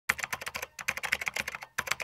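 Keyboard typing: a fast run of key clicks with two brief pauses.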